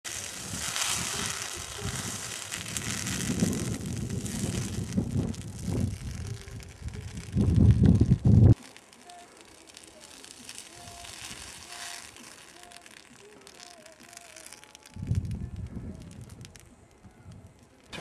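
Burning brush crackling amid a loud rushing noise, loudest about seven to eight seconds in, then cutting off suddenly to a faint outdoor background. A low rushing noise returns about fifteen seconds in.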